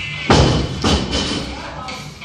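Two heavy thuds about half a second apart: strikes landing during light Muay Thai sparring. Music plays underneath.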